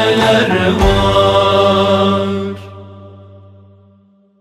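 Closing bars of a Turkish Sufi ilahi. A voice winds through the end of the last line over a steady low drone, and a final beat lands about a second in. The held chord then drops away about two and a half seconds in and fades out.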